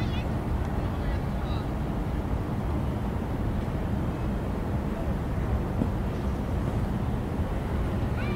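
Steady low outdoor rumble with no clear single source. Faint wavering high calls or distant voices come in the first second or two.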